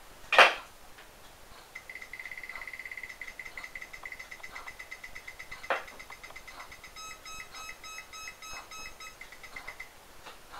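The DT-1130 EMF meter's alarm piezo beeping in a fast, high-pitched ticking run as a live power cord is held over it: the alarm is tripped by the cord's field, the reading jumping to about 250. A slower pulsing beep with a lower note joins for a couple of seconds near the end. A sharp click, the loudest sound, comes just before the beeping starts.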